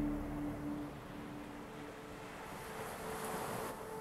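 Quiet background music, a few held tones fading low, over a steady rushing noise that brightens from about two and a half seconds in and cuts off shortly before the end.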